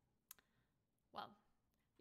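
Near silence in a pause between sentences: a small mouth click about a third of a second in, then a short breath just past halfway.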